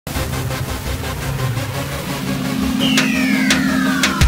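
Produced logo-intro sound effects: a dense, noisy bed over low held tones, then a whistling tone sliding down in pitch from a little before three seconds in, with two sharp hits about half a second apart.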